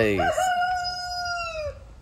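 A rooster crowing once: one long call that starts just after a spoken word and dips in pitch as it ends, lasting about a second and a half.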